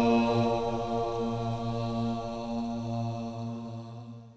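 A vocal quartet, mixed from separately recorded parts, holds a closing chord of several sustained notes that slowly fades away near the end.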